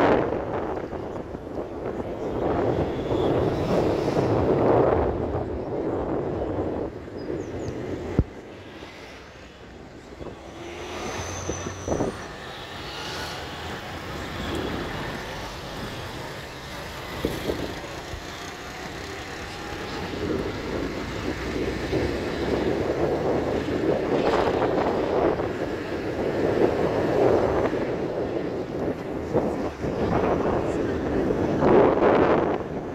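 Road and wind noise heard from inside a moving vehicle on the highway, with wind buffeting the microphone. It is loud for the first several seconds, drops away for a stretch in the middle with a couple of sharp knocks, and builds again for the last third.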